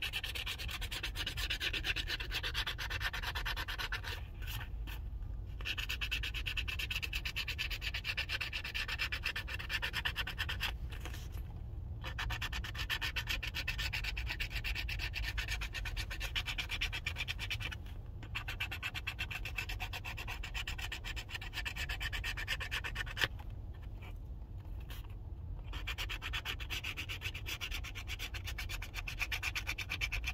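A lottery scratch-off ticket being scratched: rapid, rasping scrapes that scrub off the latex coating in long runs, broken by a few short pauses. A steady low rumble sits underneath.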